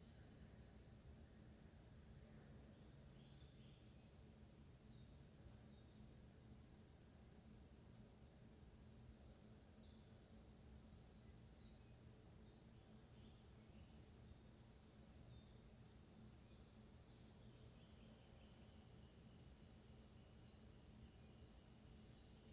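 Near silence: faint room noise, with birds chirping faintly in the distance now and then.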